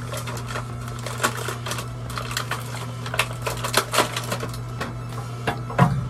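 Plastic razor packaging being cut and pried open with a pocket knife: a run of irregular clicks, crackles and snaps over a steady low hum.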